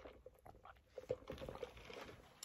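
Faint mouth sounds of a person sipping a drink through a straw, a few soft short sounds spread across the moment.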